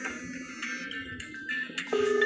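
A phone call's musical ringtone playing: a repeating melody of short plucked-sounding notes, the call still getting through to the smartphone sunk in molten wax.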